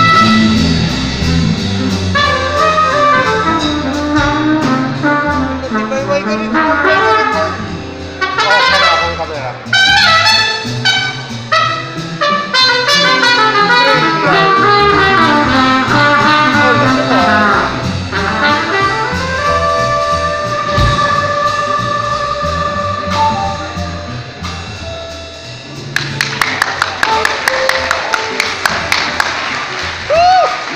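Live jazz band playing, a trumpet leading with fast runs and then a long held note, over electric guitar, keyboard and drums. Near the end, a run of sharp, evenly spaced drum hits, about three a second.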